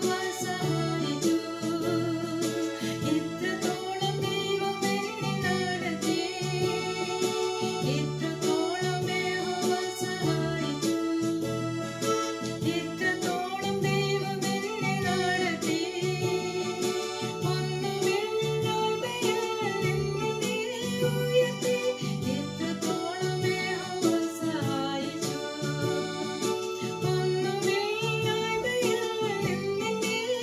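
A woman singing a Malayalam Christian song, accompanying herself on an electronic keyboard with a steady, evenly repeating bass-and-chord pattern under her voice.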